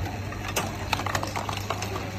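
Vibratory candy counting machine running: a steady low hum from its vibrating feeder and rotary disc, with scattered sharp clicks as counted candies drop into the plastic cups under the chute.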